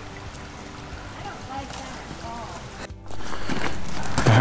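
Faint trickle of a shallow mountain creek with soft voices over it. About three seconds in, the sound cuts off and comes back louder as an even outdoor rustle.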